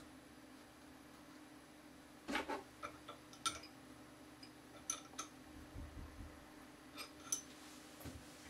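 Faint metallic clicks and scrapes as a collet and a 4 mm single-flute end mill are fitted into a CNC router spindle and the collet nut is tightened with an open-end spanner. There are about half a dozen separate clicks over a low steady hum.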